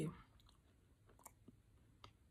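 Faint chewing of a Twix-filled doughnut, with a few small clicks from the mouth.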